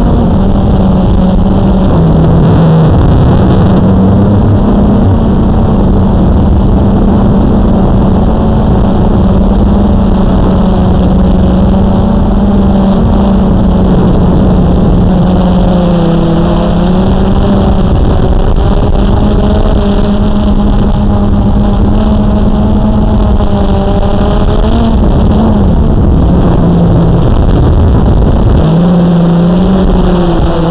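Blade 350 QX3 quadcopter's brushless motors and propellers running, heard from its own onboard camera: a loud, steady buzz whose pitch wavers and steps as the motors change speed.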